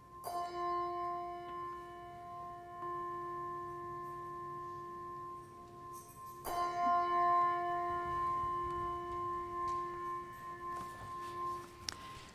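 Large brass handbell rung twice, about six seconds apart, each stroke ringing on with a long, slowly fading tone. It is rung to signal the start of worship.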